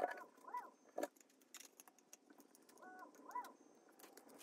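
Handling noise of a screwdriver and a 3D-printed plastic motor mount: a sharp click at the start and another about a second in, with a few short squeaky chirps that rise and fall in pitch between them.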